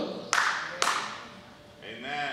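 Two sharp hand claps about half a second apart, ringing briefly in a large hall.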